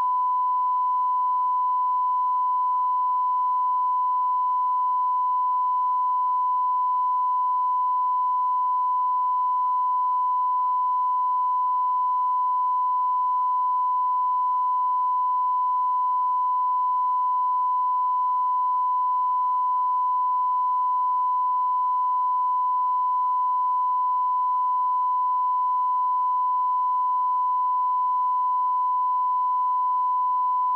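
The standard 1 kHz line-up test tone of a broadcast tape's bars-and-tone leader: a single steady beep at one fixed pitch, unbroken and unchanging in level.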